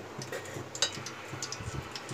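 A slotted metal spoon tapping and scraping against a metal cooking pot as soft vanaspati ghee is spooned into oil: a few faint clicks.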